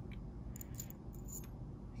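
A few faint, light clicks of small metal and plastic model-car parts being handled and set down.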